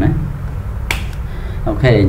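A single sharp click about a second in, with a fainter tick just after it.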